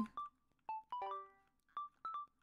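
Sparse glockenspiel-like chime notes, about half a dozen single bright plinks at uneven spacing, each fading quickly.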